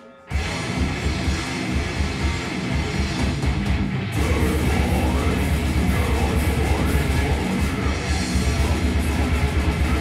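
Live heavy metal band of electric guitars and drum kit coming in together at the start of a song, a moment after the count-in. About four seconds in the music gets fuller and a little louder.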